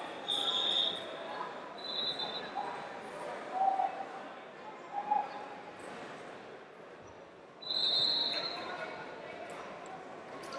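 Wrestling shoes squeaking on the mat in three short, high squeaks, the longest and loudest near the end. Brief voices call out in between, in a large hall.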